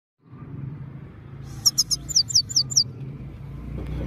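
Himalayan goldfinch singing a quick run of about seven sharp, falling high notes a second and a half in, over a steady low background rumble.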